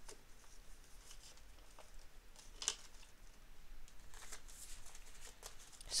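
Paper banknotes rustling faintly as they are handled and shuffled, with a few soft crisp flicks, the sharpest about two and a half seconds in.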